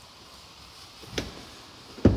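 Quiet room tone inside a pickup cab, with one short knock a little over a second in.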